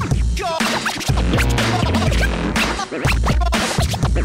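Hip-hop DJ mix: turntable scratching over a heavy bass beat, the scratches sweeping quickly up and down in pitch.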